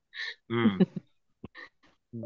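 A person's brief wordless vocal sound over a video-call connection: a short breathy hiss, then a voiced grunt about half a second in, followed by a few faint clicks.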